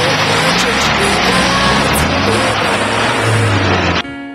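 Engine of a UAZ 4x4 off-road vehicle revving and easing off in slush and meltwater, with a dense noisy wash over it and background music underneath.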